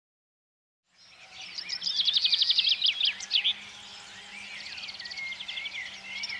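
Birdsong starts about a second in, after silence: rapid high trills and chirps, one burst after another, over a faint steady hum.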